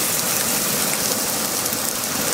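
A steady spray of water hitting a fire-blackened toy dump truck, dousing it after it was scorched with a flame.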